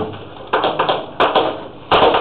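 Chalk striking and scraping on a blackboard as a formula is written: a handful of sharp taps and short strokes at uneven intervals.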